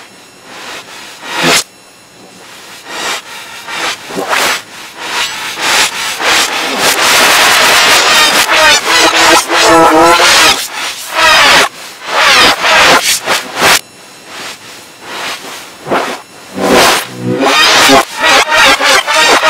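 Heavily distorted, reversed audio of loud yelling and banging from the Angry German Kid clip, pitch-shifted in a 'G major' effect. It comes in abrupt noisy bursts, with a wavering scream-like voice about halfway through.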